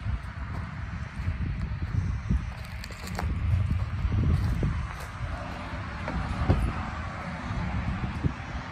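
Footsteps thudding on wooden porch steps and deck boards, a few distinct knocks among them, over a steady low rumble of wind on the microphone.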